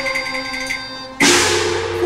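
Cantonese opera instrumental accompaniment: a held instrumental note over a fast, fading roll of percussion strokes, then, just past a second in, a loud cymbal-and-gong crash that rings and dies away.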